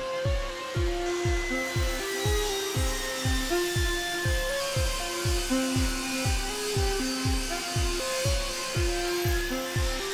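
Background music with a steady beat of about three pulses a second and a stepping bass line. Under it a table saw rips an oak board, heard as a hiss with a faint blade whine from about a second in until just before the end.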